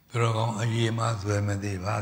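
A man's voice chanting a Buddhist recitation, held on a steady, even pitch, starting just after the beginning.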